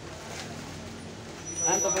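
Low, steady background noise, then a man's voice starts about one and a half seconds in.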